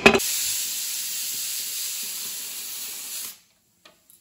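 Pressure cooker letting off steam: a steady hiss for about three seconds that stops abruptly.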